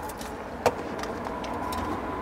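A steel tape measure being held against the inside of a van's rear storage compartment: one sharp click about two-thirds of a second in. Underneath it runs a steady low outdoor rumble.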